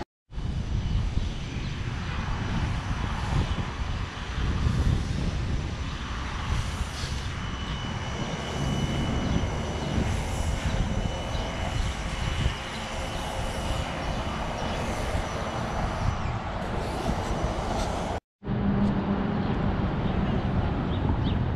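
Steady low rumble of outdoor city street ambience, with a faint thin high whine through the middle stretch. The sound drops out completely for a moment twice, at edit cuts.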